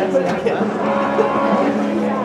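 A low, steady held tone sounding over a crowd's chatter.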